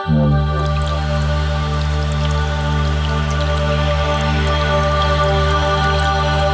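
Calm lo-fi ambient music with sustained synth pads. A deep bass comes in at the very start, and a scatter of small ticks runs over the top.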